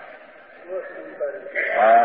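Speech only: a man lecturing slowly in Gujarati, with short pauses between words and a louder word near the end.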